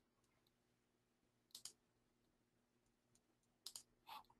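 Near silence: faint room tone broken by a few faint sharp clicks, a quick pair about a second and a half in and another pair near the end.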